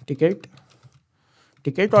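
Computer keyboard typing: a few soft keystroke clicks as a short word is typed, between short stretches of speech.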